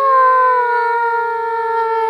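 A young girl's voice holding one long, loud open-mouthed "aaah" on a high pitch that slowly sinks a little lower.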